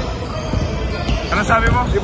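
Basketballs bouncing on a wooden gym court during a game, with a man's voice coming in over them in the second half.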